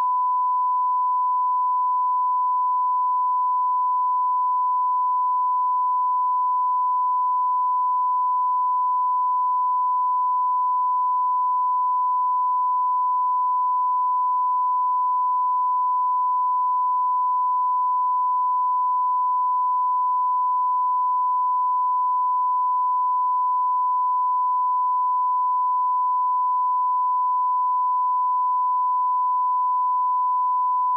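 Broadcast line-up tone: a single steady 1 kHz sine tone at constant level, unbroken throughout. It is the reference tone sent with colour bars while a feed is on standby before the programme starts.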